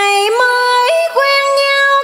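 A woman singing a vọng cổ phrase in long, held notes, stepping between pitches with short slides and ornaments, with little else heard under the voice.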